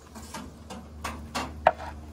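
Cider poured from a glass bottle into a drinking glass: a string of short glugs and clinks of glass, the sharpest about one and a half seconds in.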